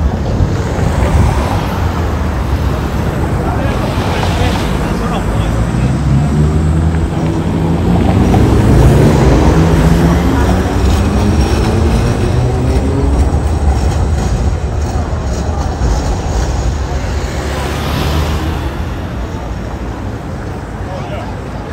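An electric tram passing close by, its motor whine rising in pitch as it pulls away, loudest about halfway through, over steady city street traffic.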